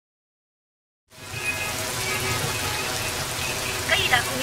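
Heavy rain falling, a steady hiss with a low rumble beneath it, starting suddenly about a second in after silence. A voice begins near the end.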